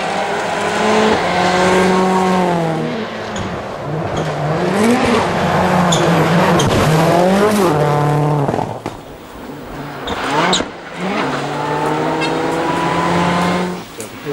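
Turbocharged four-cylinder World Rally Car engines at full throttle on a gravel stage, one car after another. The engine note holds high, falls at gear changes and swings up and down through the stage. There is a quieter lull about nine seconds in, before the next car comes through at high revs.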